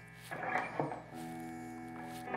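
Fender Custom Shop '51 Nocaster electric guitar played quietly through a Fender '65 Deluxe Reverb reissue amp, over steady electrical hum. A few faint pick and string noises come first, then a softly picked chord rings on steadily from about a second in.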